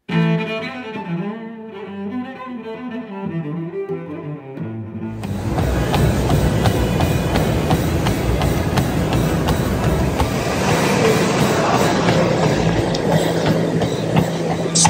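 Background music with melodic, bowed-string-like notes. About five seconds in, a louder steady mechanical noise cuts in: a running treadmill belt and motor, with faint regular thuds of a runner's footfalls.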